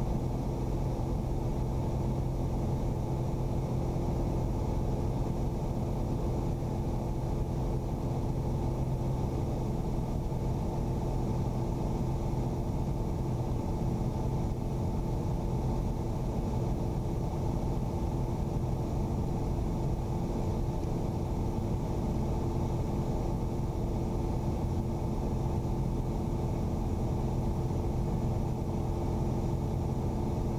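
Piper Arrow's four-cylinder Lycoming engine and propeller droning steadily in flight, a constant low hum with no change in power.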